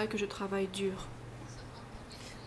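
A woman's voice speaking for about the first second, then quiet room tone with a steady low hum.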